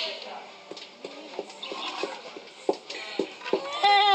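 Voices of people talking at an open-air cooking site, with scattered short knocks and clacks. A loud shouted call falling in pitch comes near the end.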